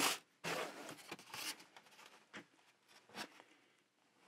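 Sheets of paper and thin plastic stencils rustling and sliding against each other as they are handled and lifted off. The sound comes in a few short bursts, the strongest in the first second and a half, then fainter brushes.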